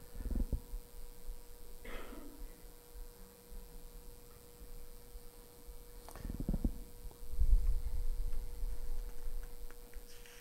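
Faint handling noise at a pulpit: a few low, dull bumps and rumbles, loudest about half a second in and again around six to eight seconds in, over a steady faint hum.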